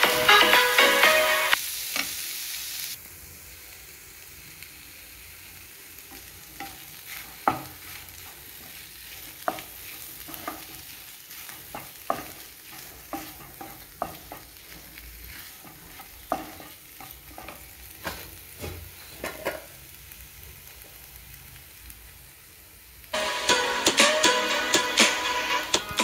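A wooden spatula stirring and scraping a potato-and-meat cutlet mixture around a nonstick frying pan, with irregular clicks against the pan over a soft sizzle of frying. Background music plays for the first couple of seconds and comes back near the end.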